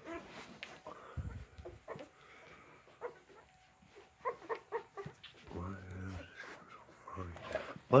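Golden retriever whining softly a few times, one longer drawn-out whine about two thirds of the way through, amid short squeaks and small clicks.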